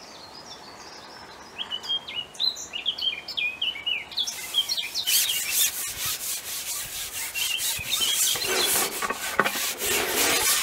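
Small birds chirping in short stepped phrases. From about four seconds in, a loud, continuous scraping rub builds as a long fishing pole is pulled back hand over hand (shipped back), its sections sliding through the angler's hands and over his clothing.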